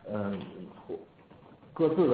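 Speech only: a man talking in Mandarin over a telephone line, with a short pause a little past halfway before he goes on.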